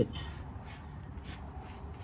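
Faint rubbing of a cloth shop rag being wiped over the oily cast differential housing, in a few soft strokes.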